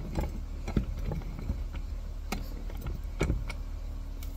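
A few separate metal clicks and knocks as a steel mower idler arm is handled and reclamped in a bench vise, over a steady low hum.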